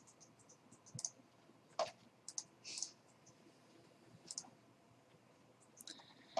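Faint, scattered clicks from a computer mouse and keyboard, about half a dozen irregular taps with one brief scratchy sound near the middle.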